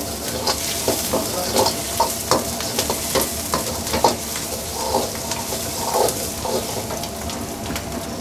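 Diced capsicum, onion and green chilli sizzling in hot oil in a wok while a steel ladle scrapes and knocks against the pan about twice a second.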